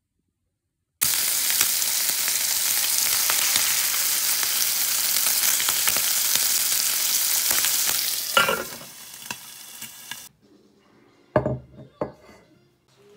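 Bacon and an egg frying in a frying pan: a loud, steady sizzle that starts suddenly about a second in and drops to a quieter hiss after about eight seconds before stopping. A clink comes just as the sizzle drops, and a short clatter near the end.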